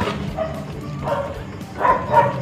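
A dog yipping and barking in short calls, one about half a second in and another near the end.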